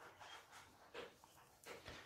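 Near silence with a few faint clicks and knocks from dogs eating in another room.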